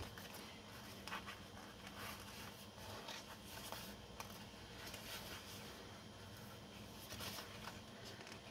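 Faint rustling and rubbing of a paper sticker sheet being handled, with a few soft ticks.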